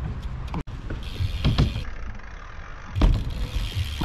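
BMX bike rolling over skatepark concrete with wind rumbling on the microphone, and a loud, sudden thump about three seconds in as the bike hits the ramp during the trick.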